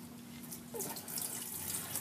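Gasoline draining from the opened plug hole of a Predator carburetor's fuel bowl, splashing faintly into a drain pan and growing from about a second in.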